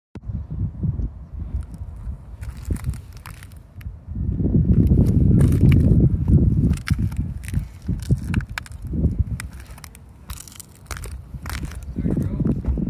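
Shoes crunching and scuffing on gritty asphalt roof shingles, with scattered clicks and scrapes, over a low rumble that is loudest from about four to six and a half seconds in.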